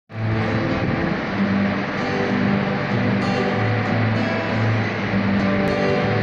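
Steel-string acoustic guitar being strummed, one chord giving way to the next about every second.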